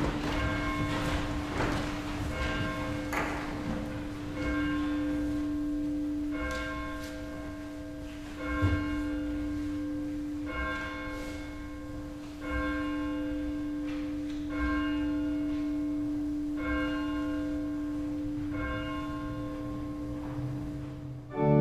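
A church bell tolling, struck about every two seconds, its low hum carrying on between strokes. A single low thump sounds a little before halfway.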